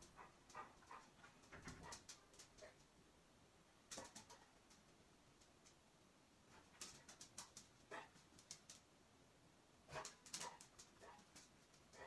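Near silence: room tone with a few faint, scattered clicks and soft rustles, in small clusters about four seconds in, around seven to eight seconds in, and about ten seconds in.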